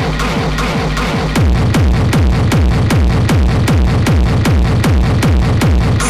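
Electronic dance track playing: a steady kick-drum beat at about two beats a second, with a bass that slides down in pitch on each beat and gets louder about a second and a half in.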